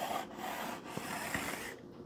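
Chalk writing on a blackboard: a run of scratchy strokes that eases off near the end.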